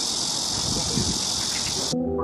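Chorus of cicadas in the trees: a dense, steady, high-pitched buzz.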